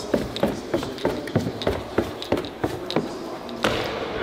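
Footsteps in sneakers going down hard stair treads: a quick, uneven run of taps, several a second, ending in a firmer step onto the concrete floor near the end.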